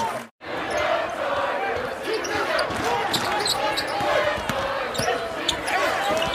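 Game sound from a college basketball arena: a basketball dribbled on the hardwood court, with short high squeaks over a crowd murmur and shouting voices. The sound drops out briefly just after the start, at an edit cut.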